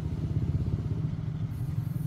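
An engine running steadily, a low, even rumble with no change in pitch.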